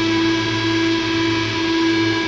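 Steady musical drone in a hardcore song's outro: a held, unchanging tone with a low hum beneath it, without beat or strumming.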